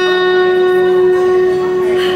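A single steady note held unchanged for over two seconds, played through the venue's sound system with evenly stacked overtones, as the opening of a song.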